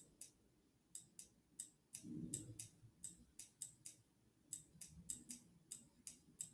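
Faint, light clicking, about three clicks a second in an uneven rhythm, from a computer's pointing-device button pressed and released for each short smudge-tool drag. A brief soft low murmur comes about two seconds in.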